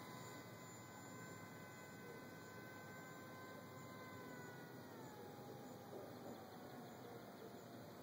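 Faint, distant whine of the Polaris Ultra RC float plane's motor and propeller, holding a steady pitch and then dropping to a lower pitch a little past halfway.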